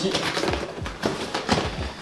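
Plastic ice-cream tubs being pushed into a float tube's nylon pocket: several soft knocks of plastic with fabric rustling.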